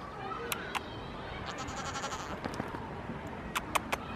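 Goat bleating: one wavering bleat about midway, with fainter bleating near the start. A few sharp clicks sound shortly after the start and again just before the end.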